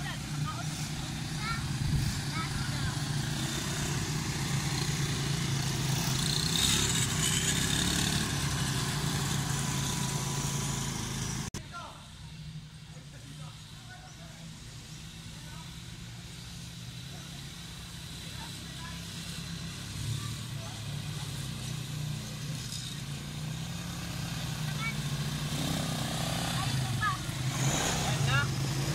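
Small ATV (quad bike) engines running as the quads circle, a steady low drone. It drops off suddenly about a third of the way in, then grows louder again toward the end as a quad comes close.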